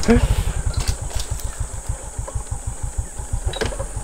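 Motorcycle engine idling with a regular putt-putt beat that slows as the revs drop, fading out near the end. A few light clicks sound over it.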